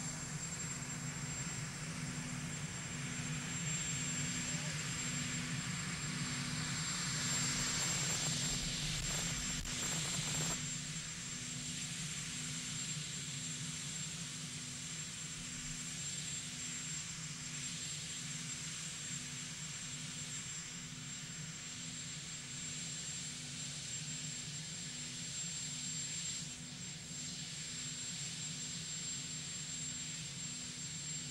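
Marine One, the presidential helicopter, running on the ground with its engines and rotor turning: a steady low hum that pulses evenly, under a constant high whine. A louder rush of noise comes about seven seconds in and stops suddenly near ten seconds.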